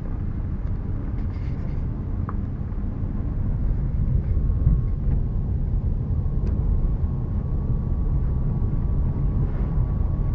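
Road and engine noise inside a moving car's cabin: a steady low rumble, with a faint, thin steady whine joining about four seconds in.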